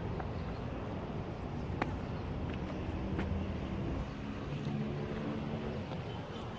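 Outdoor ambience at an open site: a steady low rumble, with a couple of faint clicks and faint distant tones near the middle.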